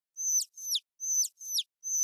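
A comic sound effect of quick, high chirps, each a short whistle falling in pitch, repeated about five times with silence in between.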